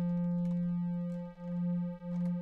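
A held synth note from the Akai MPC Fabric plugin, a steady triangle-wave tone, with its second oscillator being fine-tuned upward a few cents against the first. About a second in, the two oscillators drift apart in tune and the tone begins to pulse in a slow wobble.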